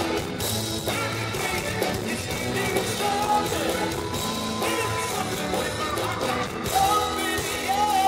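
Live rock band playing: electric guitars and drums with a male lead voice singing over them.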